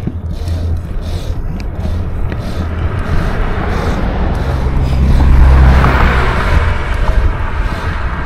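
Wind buffeting the microphone on a moving bicycle, a steady low rumble, with a car passing in the oncoming lane: its tyre noise swells about five seconds in and fades again.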